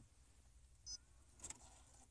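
Faint handling of a disc at a car head unit's slot: light clicks and a soft rustle about one and a half seconds in, after a short high beep about a second in, over a low steady hum.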